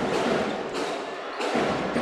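Basketball game sound from a live arena: a steady crowd hum with dull thuds of the ball and players' feet on the hardwood court.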